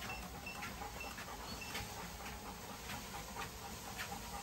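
A motorised dog treadmill running at low speed, with a large Presa Canario's paws pattering lightly and evenly on the belt, about three to four soft footfalls a second.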